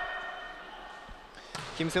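Quiet volleyball-gym ambience with a steady hum and a couple of faint thuds, then a man's commentary voice near the end.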